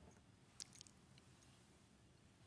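Near silence with a few faint, light clinks about half a second in, as a drinking glass is picked up.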